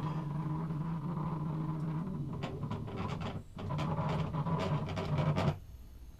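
Axis motors of a small homemade CNC mill driving the table during a test run, running with a steady drone and a few clicks. The drive pauses briefly about three and a half seconds in, runs again and stops near the end. The machine is noisy because it still needs oiling and adjusting.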